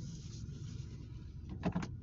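Inside a car cabin: a steady low rumble, a soft rustle at the start, and two quick sharp clicks about a second and a half in, as a control or fitting in the cabin is worked.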